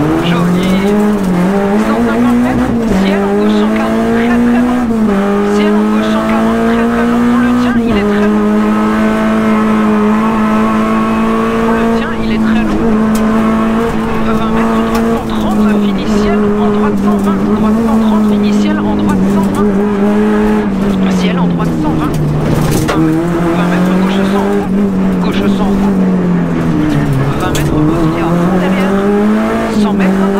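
Renault Clio N3 rally car's four-cylinder engine, heard from inside the cabin, running hard at high revs. The revs climb and drop with gear changes in the first several seconds, hold steady for a long stretch, then fall sharply about two-thirds of the way in before climbing again.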